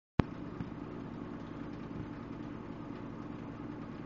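Front-loading washing machine running its spin cycle: a steady mechanical hum over a low rumble, with a sharp click right at the start.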